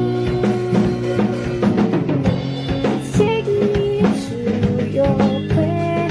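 Acoustic guitar strummed with a drum kit keeping a steady beat, a song played live; a woman's voice sings over it in places.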